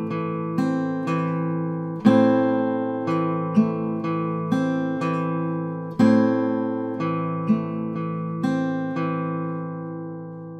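Eastman AC-508 acoustic guitar played with hybrid Travis picking on an A minor chord: a pick on the bass strings alternates with fingers on the treble strings, plucking single notes about twice a second, with heavier bass notes about every four seconds. The last notes ring out and fade away near the end.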